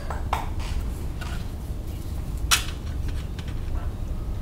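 Light clicks and rattles of cables and a small plastic wiring connector being handled, with the loudest click about two and a half seconds in, over a steady low hum.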